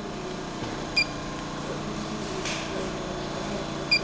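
HMI touchscreen panel giving two short, high key-press beeps as the screen is touched, about a second in and again near the end, over a steady low electrical hum.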